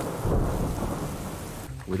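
Heavy rain falling with a low rumble of thunder, a thunderstorm that fades gradually toward the end.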